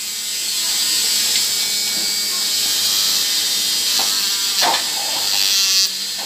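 Small handheld rotary tool with a sanding drum spinning at a steady high-pitched whirr as it polishes the worn, pitted tip of a motorcycle valve stem. The wear there is what gives the engine its tapping valve noise.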